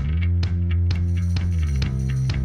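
Background music with held bass notes over a steady beat.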